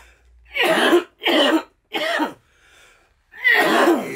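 A man coughing hard into his fist from a hit of cannabis smoke: three coughs in quick succession about a second in, then another near the end.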